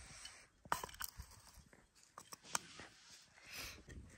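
Metal garden trowel scooping rocky, gravelly soil and tipping it into a plastic cup: faint scattered scrapes and clicks of the blade and stones.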